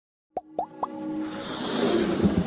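Three quick cartoon-style plops, each sweeping sharply up in pitch, about a quarter second apart. They are followed by a swelling whoosh over a held music tone, the opening sound effects of an animated logo intro.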